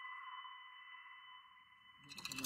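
Electronic soundtrack: a few steady high tones held together and slowly fading, with no low end beneath them.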